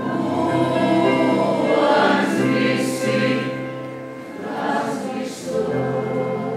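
Choir singing sustained notes.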